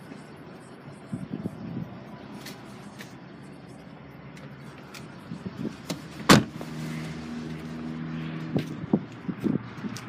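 Car door and trunk being handled: a single sharp clunk about six seconds in, then a steady low hum for about two seconds, over faint rustling of movement.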